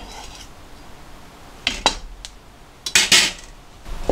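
Kitchen knife and a small stainless steel cup clinking and clattering against a cutting board and a steel rack tray: two short bursts of sharp clinks, about two seconds in and again around three seconds.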